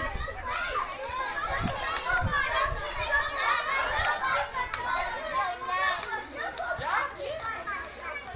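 A large group of young children chattering and calling out at once, many voices overlapping without a break.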